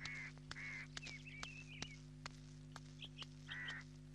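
Birds calling in a quiet rural ambience: a few short high calls and a brief run of warbling chirps, over faint regular clicks and a steady low hum.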